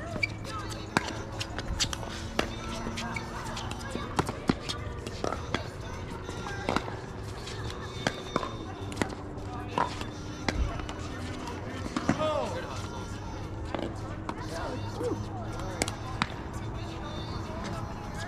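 Pickleball rally: paddles strike the plastic ball again and again in short sharp pops, with the ball bouncing on the hard court, at an uneven rhythm through the whole stretch.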